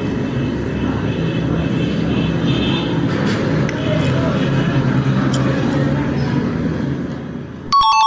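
Steady rumbling background noise, then a quick run of high electronic beeps near the end: a quiz answer-reveal sound effect.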